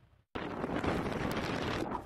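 Hurricane wind buffeting the microphone as a dense, steady rushing noise, starting abruptly about a third of a second in after a brief silence.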